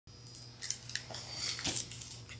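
A few faint, light clicks and rustles, scattered irregularly over a low steady hum.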